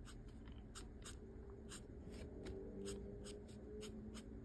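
Felt-tip marker drawing short strokes on paper, a faint scratch with each stroke, about three a second.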